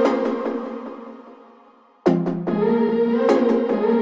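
Background music: a sustained passage fades out over the first two seconds, then a new piece starts abruptly with a struck note and carries on steadily.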